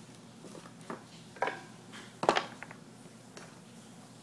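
A small wooden block knocking and clattering against a wooden cage shelf as a gerbil shoves and grips it: a few sharp knocks, the loudest a little past two seconds in, followed by a few faint ticks.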